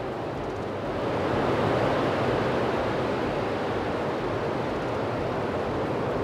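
Falcon 9 first stage's nine Merlin engines at liftoff: a loud, steady rushing rumble that swells about a second in and then holds.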